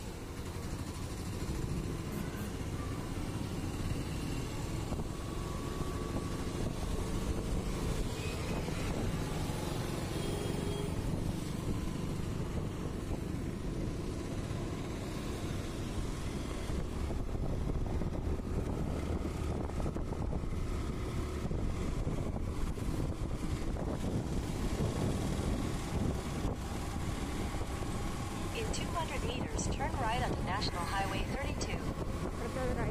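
Steady low rumble of wind and engine noise from riding on a motorbike through town traffic.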